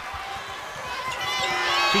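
Arena crowd murmur with a basketball being dribbled on a hardwood court and a few high sneaker squeaks.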